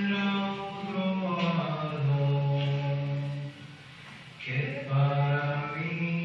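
A solo voice singing an old Sephardic song slowly and without accompaniment, in long held notes that step from one pitch to the next, with a short break a little before the middle.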